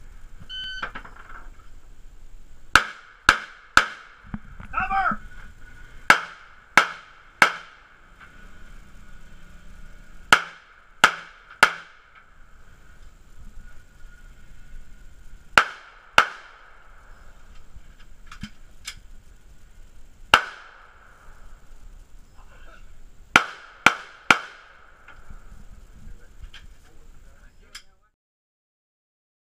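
A shot timer beeps near the start. Then a handgun fires about fifteen shots in quick strings of two or three, with pauses of a few seconds between strings.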